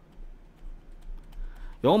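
Light taps and scratches of a pen stylus on a drawing tablet as handwriting is written on screen.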